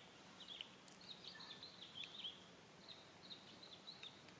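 Faint outdoor ambience with a quick run of short, high-pitched chirps from a small bird, each note gliding down, dozens of them in a few seconds.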